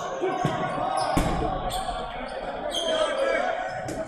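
Dodgeballs bouncing and striking on a hardwood gym floor: a few sharp thuds over background voices.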